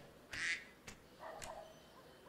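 Domestic duck quacking twice: a louder, harsh quack about half a second in and a weaker, lower one a little after the one-second mark.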